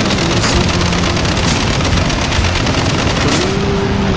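Machine guns on a half-track's multi-barrel mount firing in sustained rapid fire, shots following each other in a fast continuous rattle.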